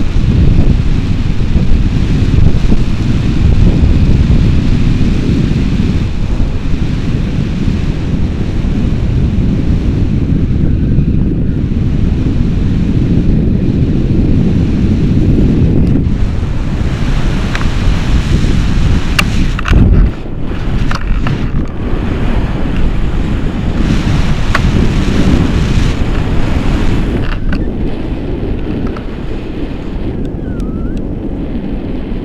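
Loud, steady rumble of wind buffeting the microphone of a pole-mounted camera on a paraglider in flight, with a few faint sharp ticks in the second half.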